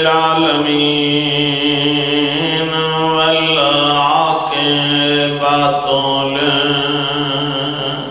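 A man chanting a sung religious recitation into a microphone in long, drawn-out held notes, one phrase after another.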